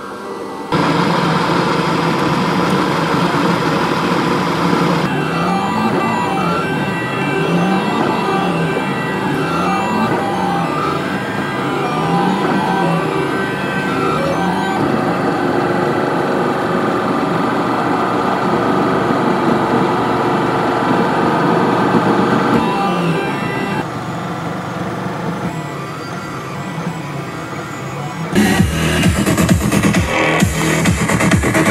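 Kossel Mini delta 3D printer printing: its stepper motors whine in several steady tones, with a low tone that rises and falls every second or two as the head sweeps back and forth across the infill. Near the end it gives way to loud electronic music.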